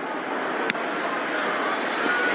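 Steady stadium crowd noise, with one sharp knock about two-thirds of a second in as the punter's foot strikes the football.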